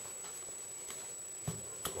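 Faint room tone with a steady thin high whine, then a soft knock about a second and a half in and a light click just after, as the cardboard-and-duct-tape sheath is handled and lifted off the countertop.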